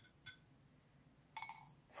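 Faint clicks of wooden chopsticks against a ceramic plate and a glass tumbler while a bean is picked up: two light taps with a slight ring, then a short scratchy clatter about a second and a half in as the bean is carried to the glass.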